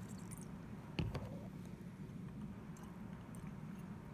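Quiet handling of a glass beaker and plastic wash bottle during a deionized-water rinse, with one light knock about a second in and faint small clicks over a steady low hum.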